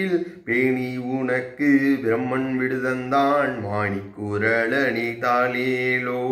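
A man singing a Tamil devotional lullaby (thaalaattu) solo in long held notes that glide slowly between pitches, phrase after phrase.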